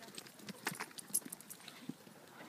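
Dogs running about close by: a scatter of light, irregular clicks and ticks.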